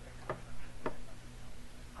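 Two short taps about half a second apart, a foot tapping up and down on the floor, over the steady low hum of the recording.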